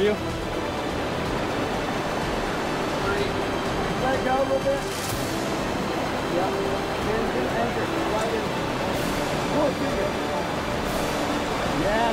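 Whitewater rapid rushing steadily as the creek pours down a granite chute, with faint calls from people now and then.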